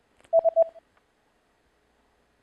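Short electronic beep sound effect: one steady mid-pitched tone with three quick pulses, lasting about half a second. It is the cue that opens the pause for the viewer to answer the review question.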